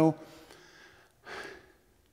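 A man's short, sharp in-breath into a handheld microphone, about a second and a half in, right after he trails off from speaking.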